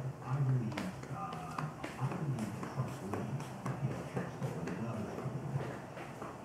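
A voice talking on an AM talk-radio broadcast played through a radio, with scattered light clicks.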